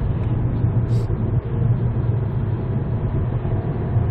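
Hyundai Avante MD cruising, heard from inside the cabin: a steady low hum of engine and road noise.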